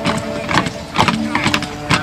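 A marching column of re-enactors in Saxon kit: sharp knocks about two a second, over a steady drone and some voices.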